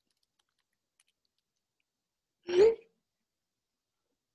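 A single short vocal sound from a person, under half a second long with a brief upward lift in pitch, about two and a half seconds in; otherwise quiet.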